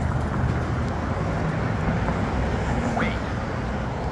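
Steady road-traffic noise from cars passing through the intersection. About three seconds in, the Polara N4 accessible pedestrian push button's speaker says a short "wait".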